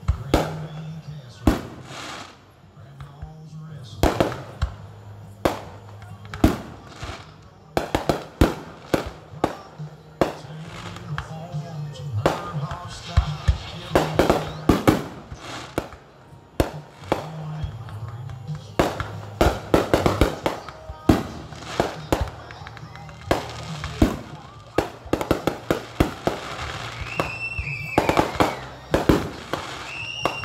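Fireworks display: aerial shells going off in a rapid, irregular series of sharp bangs and crackles, with a short high whistle near the end. Music and voices carry on underneath.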